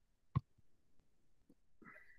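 A single sharp computer-mouse click about a third of a second in, followed by a few faint ticks and a brief faint voice-like sound near the end, over the near-silent room tone of a video call.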